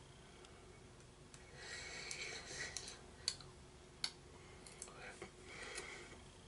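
Faint crunching and a few sharp clicks of in-shell sunflower seeds being eaten and their shells cracked and handled. It begins about a second and a half in, with the two loudest clicks in the middle.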